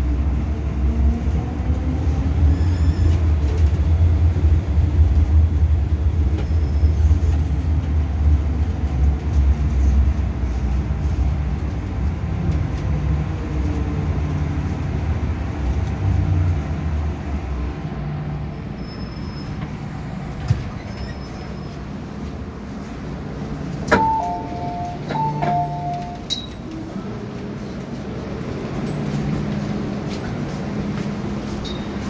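MTR M-Train electric multiple unit running and braking into Admiralty station: a loud low wheel and motor rumble with a shifting motor whine fades away over the first half as the train slows to a stop. After it stops, a short two-note chime that steps down in pitch sounds twice, about a second apart, near the end.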